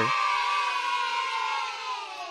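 A group of children cheering together in one long held shout that fades out near the end.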